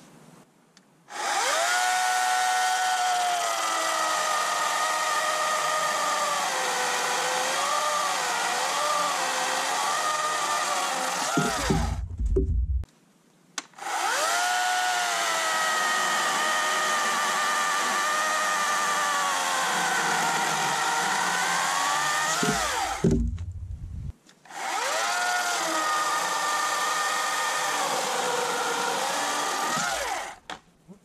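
Oregon CS300 cordless electric chainsaw cutting hardwood logs in three runs with short pauses, its motor whine dropping and wavering in pitch as the chain bites into the wood. Low thumps come at the end of the first two cuts.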